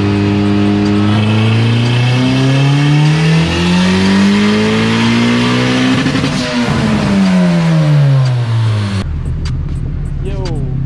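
Turbocharged Honda K24 four-cylinder in a Civic Si making a dyno pull: the engine note climbs steadily for about five seconds, with a rush of noise at the top, then falls away as it slows down. Near the end the sound cuts off abruptly.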